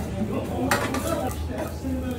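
A metal knife scraping and clinking on a steel griddle plate, with one sharp metallic clack a little under a second in.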